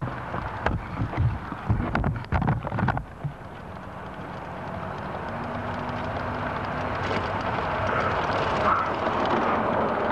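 Wind buffeting the microphone in irregular gusts for the first few seconds. After that comes a steady rushing noise that slowly grows louder.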